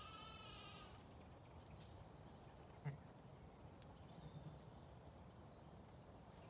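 A Zwartbles lamb giving one short, high, wavering bleat at the start, then a single brief knock about three seconds in.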